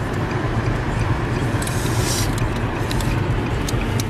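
Engine and road noise of a moving car heard from inside the cabin: a steady low rumble, with a brief hiss about two seconds in.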